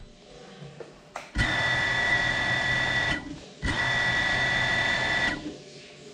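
FPV cinewhoop drone's brushless motors and ducted propellers spinning up twice, each a steady high whine of under two seconds that starts and stops abruptly, with a short pause between. A brief click comes just before the first run.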